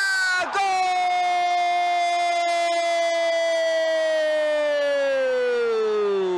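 A football commentator's drawn-out goal call: one long held shout of "Gol!" that breaks briefly about half a second in, is then held at a steady pitch for over five seconds, and drops in pitch as it ends.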